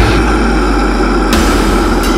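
The drums drop out and a low, distorted chord rings on as a steady drone. A cymbal-like hiss comes back in about two-thirds of the way through.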